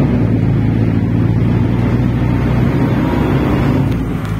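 An engine running steadily, a deep even hum with no change in pitch.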